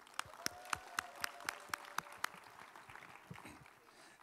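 Light applause from a congregation: regular claps, about four a second, that die away after about two seconds.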